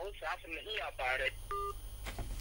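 Voice heard over a telephone line, then a short electronic telephone beep, a steady tone lasting about a fifth of a second, about one and a half seconds in.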